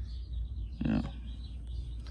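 Birds chirping faintly in the background, short high chirps repeated throughout, over a steady low hum.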